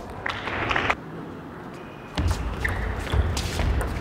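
Table tennis ball clicking off bats and table, several sharp taps in the second half, over the low rumble of a crowd in a large hall. A short burst of noise comes about a third of a second in.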